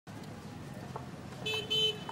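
Outdoor ambience with a steady low rumble, then a vehicle horn honking twice in quick short blasts about one and a half seconds in.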